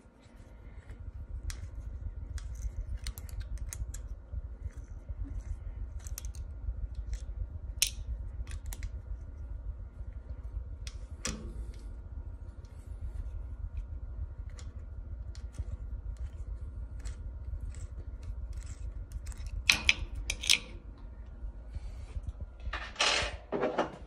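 Allen key turning the socket-head screws of a milling-machine table stop: scattered small metallic clicks and ticks over a steady low hum, with a few sharper clicks and a short rustle near the end.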